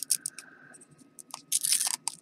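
Reusable hook-and-loop (Velcro) strap being pulled tighter around a micro quadcopter's battery: a few light crackles, then a short rasping rip about one and a half seconds in.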